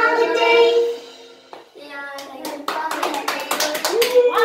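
Two girls' voices hold the last sung note of a children's English song over a backing track, ending about a second in. From about two seconds in, a round of hand clapping follows, with some voices mixed in.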